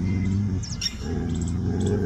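Dog growling low and steadily in two long stretches, with a short break about half a second in: a guarding growl at another dog. Faint bird chirps sound above it.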